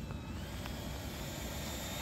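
80 mm electric ducted fan of a Freewing T-33 Shooting Star RC jet running at low throttle. It gives a faint steady whine over a hiss, and the whine rises slightly in pitch about half a second in.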